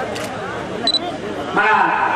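A man's speech amplified through a public address microphone, quieter at first and louder from near the end. A short high beep sounds about a second in.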